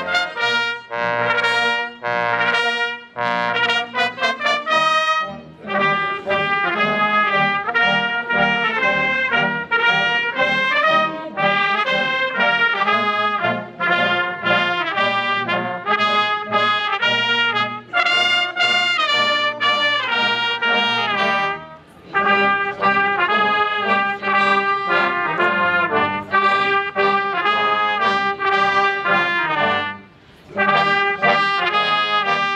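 Military brass band of trumpets and trombones playing a solemn piece, taken as the national anthem, with a brief pause about two-thirds of the way through.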